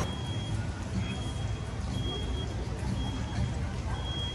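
A vehicle's reversing alarm beeping about once a second, each beep about half a second long, over a low background rumble.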